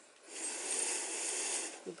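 A slow, deep in-breath drawn close to the microphone: a breathy hiss that starts shortly in and lasts about a second and a half.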